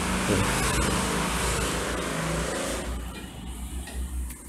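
A motor vehicle running, heard as a steady rumble and hiss that fades out about three seconds in.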